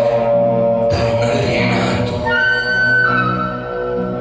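Live jazz band playing, with long held notes over a steady low line. A higher held note comes in a little over two seconds in.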